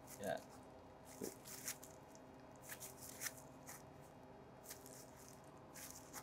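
Faint crinkling and light clicks of disposable plastic gloves as hands press a slice of raw ahi tuna onto a rice ball to shape nigiri: a scatter of soft ticks spread over the few seconds, over a low steady room hum.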